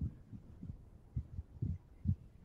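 A run of dull, low thumps at an uneven pace, a few a second, with nothing higher-pitched over them.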